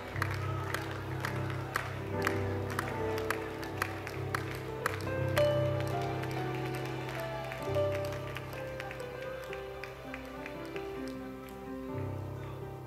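Soft church worship music: held keyboard chords over a bass line, changing every few seconds. A light clapping beat, about three claps a second, runs under it and stops about halfway through.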